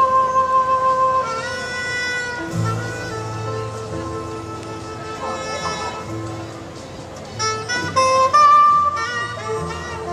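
Live jazz quartet playing a rhumba: saxophone carrying the melody in long held notes over piano, electric bass and drums, with the loudest held notes at the start and again about eight seconds in.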